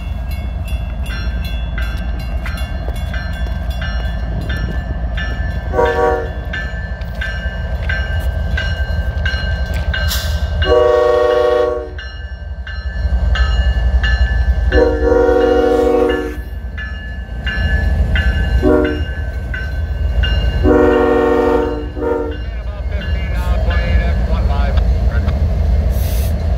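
Norfolk Southern freight locomotives approaching and passing with their diesel engines rumbling. The horn gives a brief toot about six seconds in, then sounds the grade-crossing signal: long, long, short, long.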